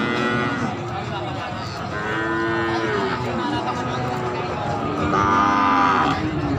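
Goats bleating three times over steady background noise: a call right at the start, another about two seconds in, and a louder one near the end.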